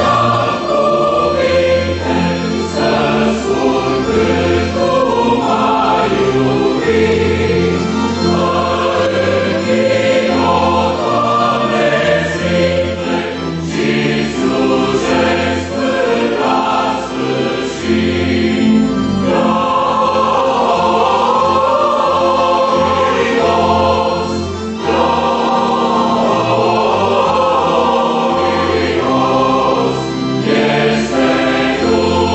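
A mixed church choir of women's and men's voices singing a hymn in parts, continuous with a brief break about 25 seconds in.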